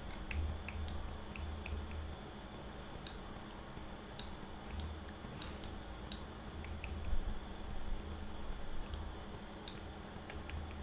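Faint, irregular clicking at a computer keyboard, a handful of short sharp ticks spaced a second or more apart, over a low hum.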